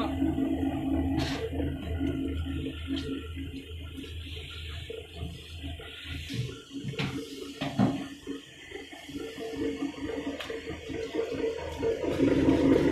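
Sesame seed washing and peeling machine running: a steady electric motor hum over water churning in the tank, with a few sharp knocks.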